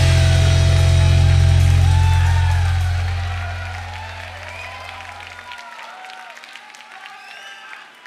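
A rock band's final chord on distorted electric guitars and bass, held and then fading out over a few seconds until the bass cuts off. As it dies away, a concert audience cheers, whistles and claps.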